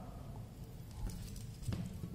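Faint handling of a metal link watch bracelet, with a couple of small clicks as fingers work the links.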